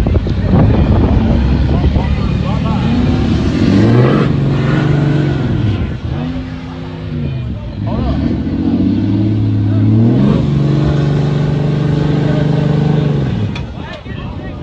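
A vehicle engine revving in repeated surges, each climbing, holding steady for a second or two and dropping away, the longest held near the end, as a car stuck in soft wet sand is pushed and towed to free it. Voices are shouting in the background.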